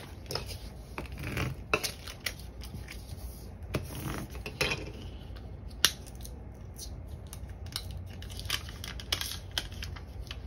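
Hands handling a sheet of vinyl lettering on its backing paper on a desk: rustling and scraping of paper and plastic with scattered light taps, and one sharp click about six seconds in.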